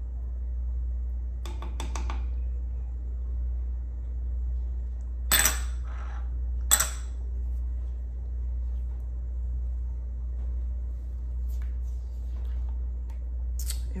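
Kitchenware clinking: a small glass bowl and a wooden spoon knocking against a saucepan and the countertop, with two sharp clinks a second and a half apart near the middle and lighter clicks before and after. A steady low hum runs underneath.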